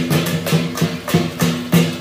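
Lion dance percussion: drum and cymbals playing a fast, driving beat with several strikes a second.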